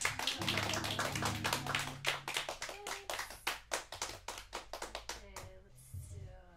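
Small audience clapping at the end of an acoustic guitar song. It starts suddenly and thins out to scattered claps toward the end. The final guitar chord rings underneath for the first two seconds.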